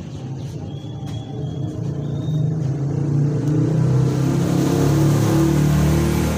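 A motor vehicle's engine running, a low rumble that grows louder over the first few seconds and then holds steady.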